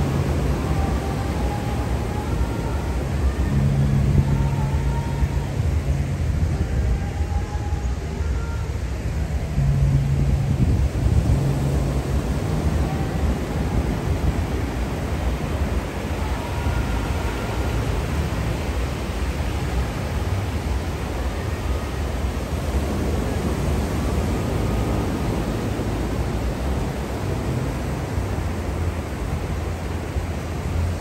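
Steady wash of ocean surf on a beach, with wind rumbling on the microphone. A low hum comes in briefly twice, about four and ten seconds in.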